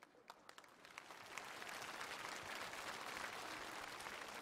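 Studio audience applause: a few scattered claps at first, building into steady clapping about a second in.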